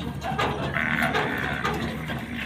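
A bull jumping down from a pickup truck's bed, its hooves knocking on the truck floor and tailgate, with a livestock animal's call held for about half a second, a little under a second in.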